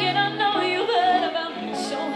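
Live rock band playing: a woman singing a wavering held line over electric guitar, bass guitar and drums.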